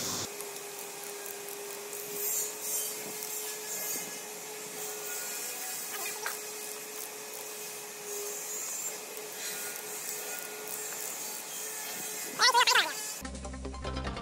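Faint workshop sounds of a ratchet torque wrench working the nuts of a cast-iron power hammer cylinder cover: light rubbing and metal handling over a steady low hum. Near the end a brief, louder sweeping sound, then music starts.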